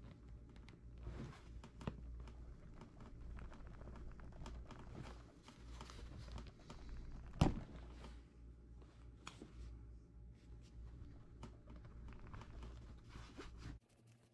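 Hands working a canvas bag as a bolt is pushed through the fabric and fitted with a screwdriver: rustling and scraping cloth with small clicks of metal, and one sharper knock about seven seconds in. A low steady hum underneath cuts off just before the end.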